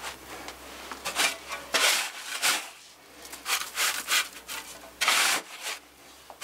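Hands scraping and spreading sand over celery roots in a wooden sandbox: a run of short, irregular scrapes, the loudest about five seconds in.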